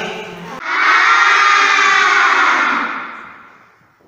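A class of children answering together in a loud, drawn-out chorus, which fades out over the last second.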